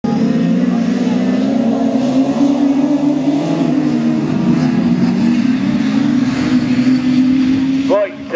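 A pack of autograss racing cars running hard together, their engines blending into one loud, steady drone whose pitch wavers as the drivers work the throttles.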